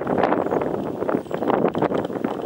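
Wind buffeting the microphone: a loud, uneven rush of noise.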